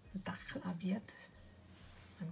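Quiet speech: a few low words spoken in the first second, then only a faint low hum.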